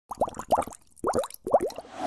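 Intro logo sound effect: three quick clusters of short, rising bubbly pops, like bubbles plopping.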